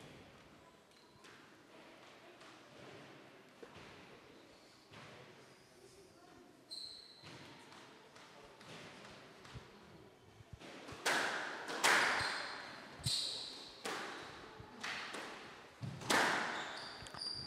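Squash rally: the ball hit by racquets and striking the court walls, sharp impacts roughly once a second with a short ring in the glass-backed court. It starts about eleven seconds in, after a lull with only faint sounds.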